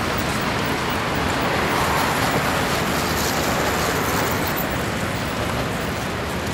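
Steady road traffic noise from cars passing on an avenue, an even, continuous rush without clear single events.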